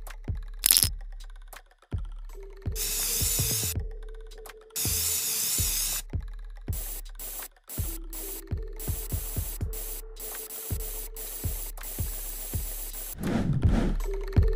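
Aerosol spray paint can sprayed in repeated short hissing bursts, each a second or so long, over background music.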